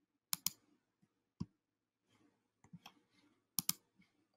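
Computer mouse clicks, sharp and short, mostly in close pairs: a pair near the start, a single click about a second later, a few faint clicks, and another pair near the end.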